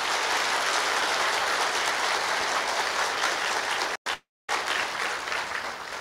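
A large audience applauding steadily, a dense patter of many hands clapping at once. The applause breaks off in a brief silence about four seconds in, then carries on a little quieter.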